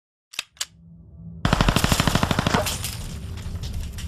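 Gunfire sound effect in a video logo intro: two single shots, then from about a second and a half in a rapid machine-gun burst of roughly a dozen rounds a second lasting about a second. The burst fades into a ringing tail over a low drone.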